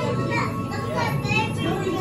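Children and adults talking over one another, with music playing in the background.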